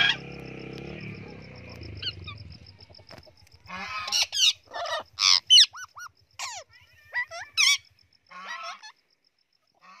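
Pet parrots calling: a run of short, shrill squawks and screeches starting about three and a half seconds in, after a steady low hum in the first few seconds.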